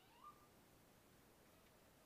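Near silence, with one brief, faint rising animal call about a quarter second in.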